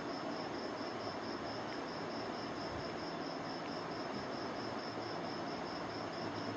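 Crickets chirping steadily in a quick, even, high-pitched pulse over a faint hiss.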